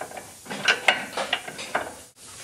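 Ratcheting wrench clicking as it turns the castle nut off the lower ball joint stud: a quick run of metallic clicks, several a second, from about half a second in.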